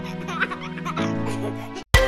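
Upbeat children's background music with a cartoon baby giggling over it; near the end the music drops out for a moment and a new tune with sharp beats starts.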